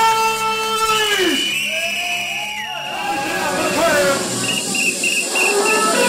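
Hardcore rave music over a club sound system in a breakdown: gliding, pitch-bending synth and vocal-sample tones with no steady kick drum. The low end drops out about three seconds in, and short repeated high blips come in near the end.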